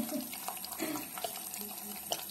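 Tap water running into a sink basin, a steady splashing. A few short, soft, low vocal sounds come at the start, about a second in, and near the end.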